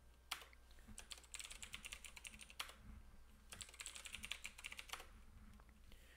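Faint computer keyboard typing: a single key press, then two runs of quick keystrokes each a little over a second long.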